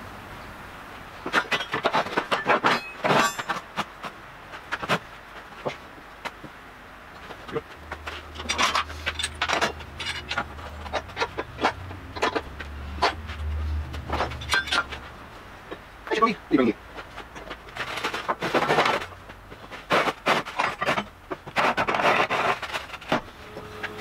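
Steel workshop clamps and heavy steel angle being handled and tightened: a string of metallic clinks, clanks and taps, with a low hum in the middle.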